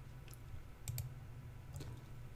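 A few faint computer mouse button clicks, two of them close together near the middle, as a dialog box is cancelled and closed.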